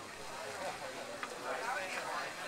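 Faint, indistinct speech.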